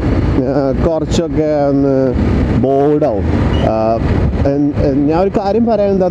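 A man talking over the steady running of a TVS Apache RR310 motorcycle engine while riding at road speed.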